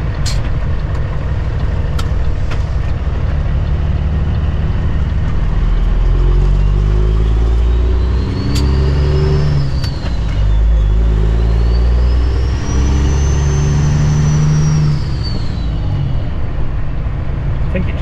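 Cummins ISX diesel of a 2008 Kenworth W900L, heard from inside the cab, pulling the truck away and working up through the gears. A whistling turbo whine rises with the engine, drops at a gear change about ten seconds in, rises again and fades as the driver eases off near fifteen seconds. A few sharp clicks sound in the first three seconds.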